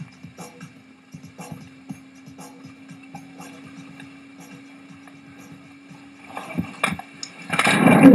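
Water-skiing audio from a head-mounted camera: a steady low drone with water spray and small splashes, then a loud crash near the end as the skier falls into the water.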